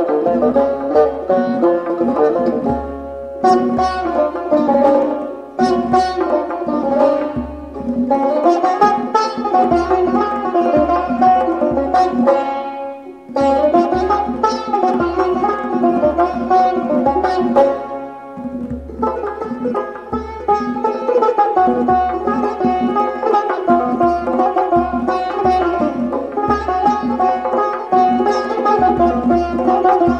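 Persian classical music: a tar, the long-necked plucked lute, plays a rapid melody over steady tombak goblet-drum strokes, with short breaks between phrases.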